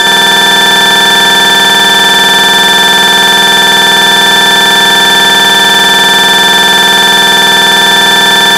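A loud, unbroken horn-like buzzing tone, held at one pitch without any change.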